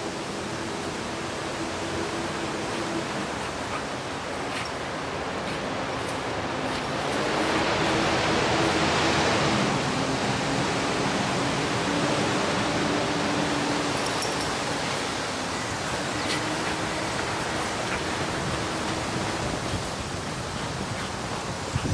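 Wind rushing over the microphone, swelling for a few seconds about halfway through, with a faint low hum underneath.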